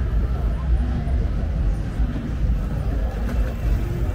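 Steady low rumble of outdoor city ambience with faint voices in the background.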